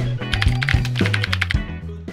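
Background music with a steady bass line, over a quick run of computer keyboard typing clicks, about eight a second, from shortly after the start to about a second and a half in.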